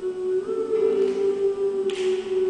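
Live song: a woman's voice holding a long sung note over acoustic guitar, with a short sibilant hiss near the end.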